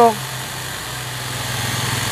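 Cordless DEKTON battery chainsaw running with its chain cutting through a thick log: a steady electric motor hum with chain and wood-cutting noise that gets a little louder about a second in. It is cutting easily under light feed, without being pressed down.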